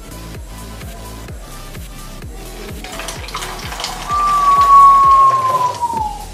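Liquid poured from a small plastic cup into an empty plastic pop bottle, splashing and gurgling. The pour is loudest over the last two seconds, over background music with a steady beat.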